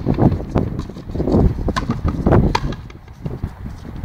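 Frontenis rally: the small rubber ball is struck by rackets and hits the court walls, making sharp knocks at uneven intervals that echo in the walled court, with running footsteps on the court floor.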